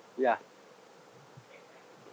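A man's voice saying a short "yeah" just after the start, then quiet room tone.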